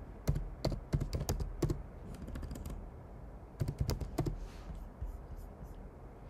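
Typing on a computer keyboard: a quick run of key clicks over the first second and a half, then a second short burst of clicks about three and a half seconds in.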